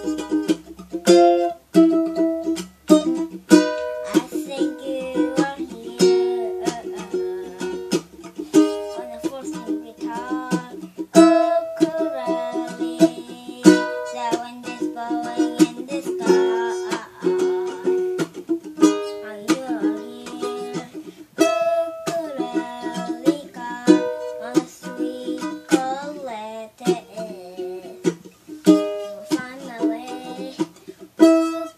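Acoustic ukulele playing a solo tune, chords strummed in a steady rhythm with melody notes ringing over them.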